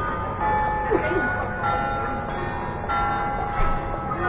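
Church bells ringing from a Gothic church tower, a new stroke at a different pitch about every second and a quarter, each one ringing on. Crowd chatter goes on underneath.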